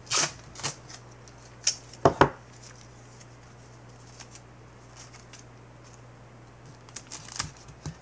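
Masking tape being pulled and torn into strips by hand: a few short crackly tearing sounds near the start, a quick pair about two seconds in, and more near the end, over a faint steady hum.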